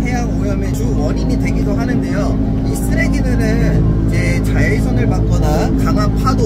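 A man talking over the steady low drone of a boat's engine heard inside the wheelhouse cabin.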